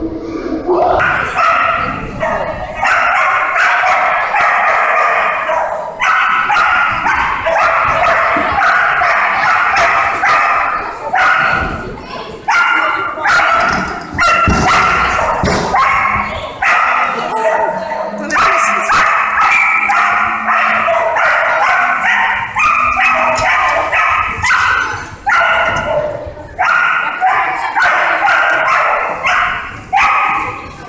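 A dog barking and yipping, high-pitched, in a nearly unbroken string with only brief pauses every few seconds.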